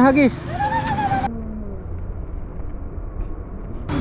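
A word of speech, then a steady, low, even background noise of the open beach: wind and surf.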